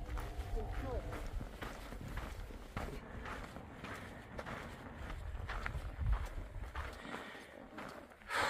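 Footsteps on a dirt trail with irregular taps of trekking poles, over a steady low rumble.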